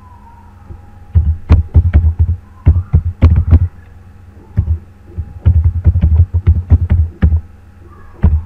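Computer keyboard typing in quick bursts of keystrokes, each a sharp click with a heavy low thud. It starts about a second in, with a short pause near the middle.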